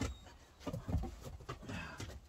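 A dog making a few short vocal sounds while it waits to be fed.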